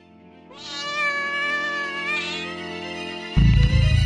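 A cat's long, drawn-out meow over soft background music; louder music cuts in near the end.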